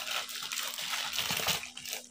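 Plastic packaging rustling and crinkling softly as a cellophane-wrapped plastic cup is pulled from a plastic courier bag.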